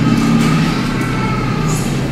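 A steady low engine drone, like a heavy vehicle running, with a brief paper rustle near the end.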